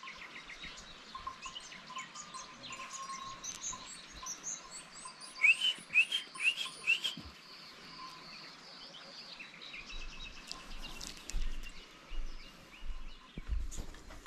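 Small songbirds chirping and singing, with a quick run of four or five rising chirps about halfway through.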